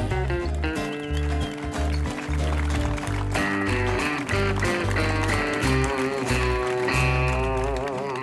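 A small live band playing an instrumental passage: strummed acoustic guitar and electric bass under an electric lead guitar, whose notes bend and waver toward the end.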